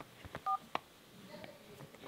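Phone dial-pad key tone: one short two-note beep about half a second in as a key is pressed, with a few light taps and clicks around it.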